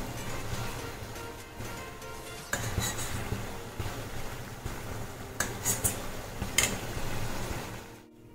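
Steel spoon clinking and scraping against the side of a steel pan while skimming foam off a boiling corn purée, over the steady bubbling of the boil. There are a few sharp clinks a couple of seconds in and a quick cluster of them in the second half.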